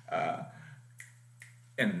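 A man speaking briefly, then a sharp click about a second in and a fainter click just under half a second later, before his speech resumes.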